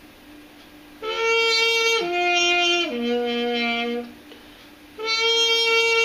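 Getzen Eterna 700 trumpet played through an unpowered Yamaha Silent Brass mute: three notes stepping down, then one longer note about five seconds in. A thin tone like a harmon mute, except a lot quieter.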